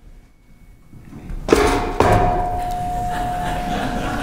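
Handling clatter and a sharp knock at the lectern, then a single steady ringing tone through the public-address system for nearly two seconds that cuts off just before the end: microphone feedback.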